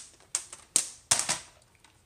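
Plastic clacks and knocks from a Fiskars paper trimmer being handled: about five sharp clacks in the first second and a half.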